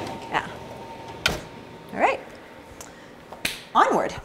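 A sheet pan of fries slid into a range oven and the oven door shut with a single thump about a second in, with a few light clicks of the tray and door around it.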